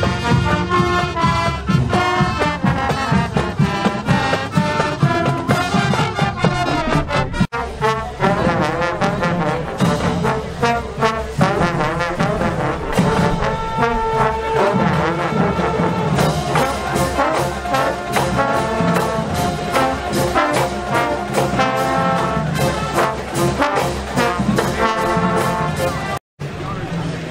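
Marching band brass, led by trombones and trumpets, playing an upbeat rhythmic tune, with a momentary break about seven and a half seconds in.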